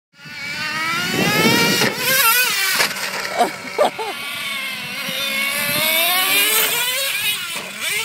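Traxxas Revo's two-stroke nitro engine revving, its high-pitched whine rising and falling over and over as the truck is throttled. A few sharp knocks cut in at about 2 and 3 to 4 seconds in.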